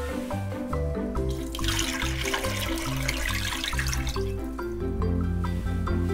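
Background music plays throughout. From about a second and a half in until about four seconds, liquid is poured into a pot of water.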